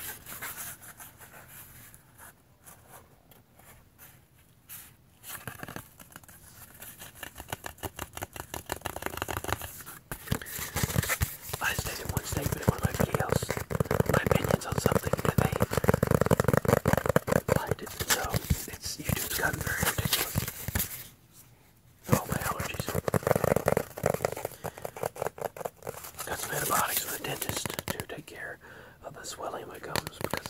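Fingers tapping and scratching fast on a thin cardboard disc, as dense rapid ticks and rasps. The sound is quiet for the first few seconds, pauses briefly about two-thirds of the way through, then resumes.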